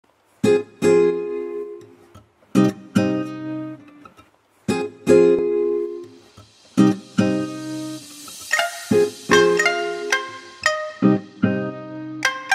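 Background music: guitar chords plucked about every second or two, each left to ring and fade.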